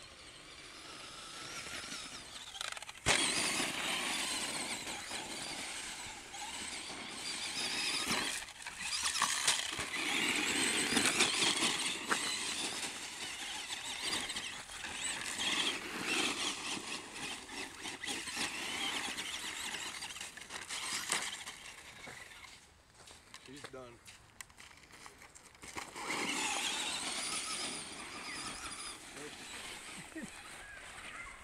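Traxxas Stampede XL-5 RC monster truck's brushed electric motor whining, its pitch sweeping up and down as the throttle is worked, over the noise of the tyres on dirt and gravel. The whine drops away for a few seconds past the middle as the truck goes farther off, then comes back loud near the end.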